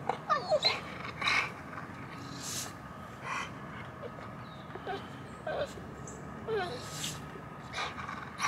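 An American bully dog whining on and off in short, high, sliding whimpers, with a few brief noisy bursts between them.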